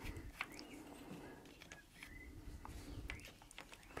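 Faint handling sounds of a handmade cherry-wood toy: a wooden-handled screwdriver turns a wooden screw, giving soft scattered clicks and knocks, with a couple of short faint squeaks.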